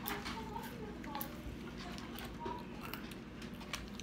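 Faint eating sounds from children chewing fast food: scattered small clicks and mouth smacks over low room noise.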